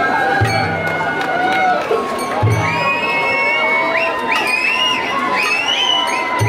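Sawara-bayashi festival music from a float: a high bamboo flute and two low taiko drum booms about two seconds apart. Over it a crowd cheers, and from about halfway through it lets out a string of rising high-pitched shouts.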